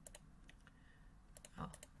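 A handful of faint, sharp computer clicks from a mouse and keys, spread through a quiet room.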